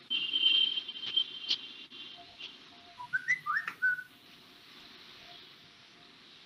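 High, steady whistle-like tone for about two seconds with a few clicks, then a quick run of short whistled notes jumping up and down in pitch about three seconds in.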